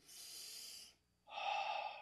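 A man breathing close to a microphone: a soft breath, a brief silence about a second in, then a louder breath.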